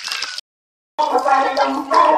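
A brief crackly noise that cuts off into dead silence, then about a second in a song starts: a voice singing with musical accompaniment.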